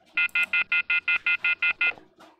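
Rapid train of about ten short, identical electronic beeps, about five a second, from the Launch X-431 PAD VII diagnostic scan tool as the diagnostic session is ended and the reminder to remove the VCI from the vehicle appears.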